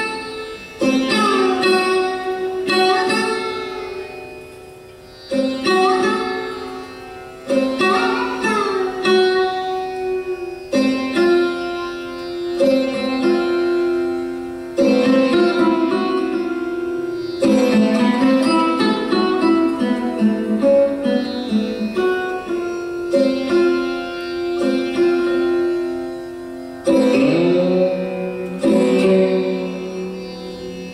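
Solo sarod: single plucked notes every second or two, many sliding between pitches, over a steady drone, with no tabla. Near the end a low note is bent downward.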